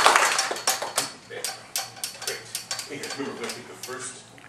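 Audience applause dying away over about the first second, then a few scattered claps and small clicks and knocks, with low voices murmuring.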